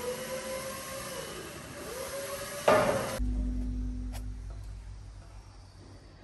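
A forklift running, its whine dipping and rising in pitch, then a loud metallic clank about halfway through. After that the sound drops to a low steady hum with a single click.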